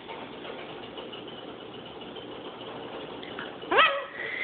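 Goffin's cockatoo giving one short call that rises sharply in pitch near the end, its learned 'hello' asking for head scratches.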